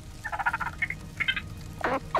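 A cartoon slug's chattering voice: quick, squeaky, fluttering babble in several short spurts, a small creature putting forward an idea.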